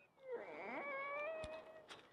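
A cat's meow: one drawn-out call that dips, then rises and holds steady, with a short click near its end.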